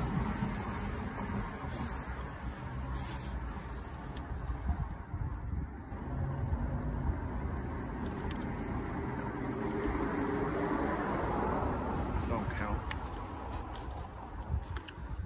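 Steady rumble of road traffic in the background, with no sudden events.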